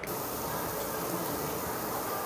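Steady, even hiss of restaurant background noise.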